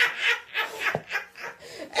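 A person laughing in a run of short bursts that die away over the first second or so, with a single click about halfway through.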